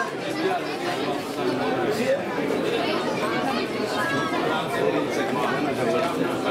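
Several people talking over one another in a steady, indistinct chatter of trackside spectators.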